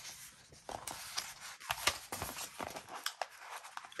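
Paper sticker sheets being handled and bent on a tabletop: rustling and crinkling with many small taps and clicks throughout.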